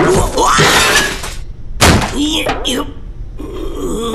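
Cartoon sound effects: a noisy clattering crash of kitchenware with a sharp knock just before the midpoint, mixed with a small cartoon creature's wordless vocal exclamations.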